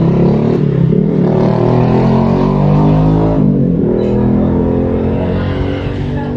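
A motor vehicle's engine running close by, louder than the surrounding speech, with a steady pitch that shifts briefly about three and a half seconds in.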